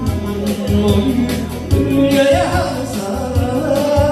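A man singing a Korean trot song into a microphone, amplified through speakers, over backing music with a steady beat.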